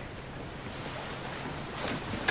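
Steady low background hiss: the room tone of a soundtrack in a pause between lines, with a slight swell near the end.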